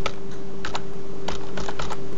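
Computer keyboard keys tapped one at a time, about half a dozen irregular keystrokes as a password is typed, over a steady low electrical hum.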